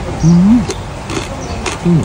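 A man humming "mmm" with his mouth full while chewing noodle soup: a longer hum that rises in pitch early on, then a short second hum near the end.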